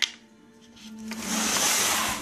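Low background music with steady tones; from about a second in, a rustling hiss rises and holds as something is handled close to the phone.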